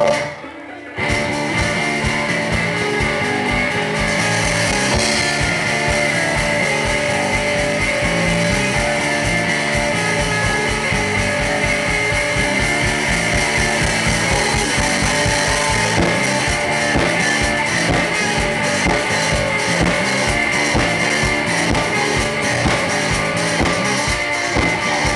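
Live rock band playing loud: electric guitar, bass guitar and drums. The sound drops briefly under a second in, then the band plays on steadily.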